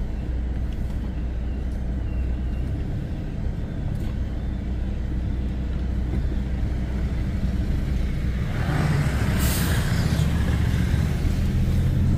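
Car heard from inside the cabin, its engine and tyres making a steady low rumble while driving slowly over block paving. About eight and a half seconds in, a hiss swells for roughly two seconds and fades.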